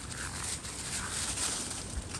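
Two dogs scuffling in play on dry fallen leaves: continuous rustling and crunching of leaves under their paws, with faint dog sounds mixed in.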